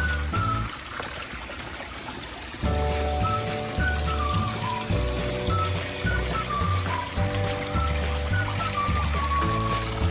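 Background music, a melody over steady chords and a bass line, with a small creek trickling underneath; the music pauses for about two seconds near the start, leaving the running water on its own.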